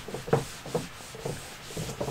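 Handheld eraser rubbing across a whiteboard in quick back-and-forth wiping strokes, about two to three a second.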